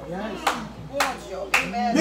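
Hand claps, three sharp claps about half a second apart, in a rhythm, over voices speaking.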